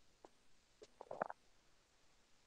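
Near silence, broken by a few faint, short soft sounds, the clearest cluster about a second in.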